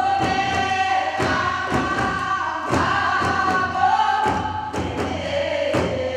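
Several voices singing a Korean folk song together, with held, sliding notes, accompanied by sharp strokes on buk barrel drums struck with sticks, about one to two strokes a second.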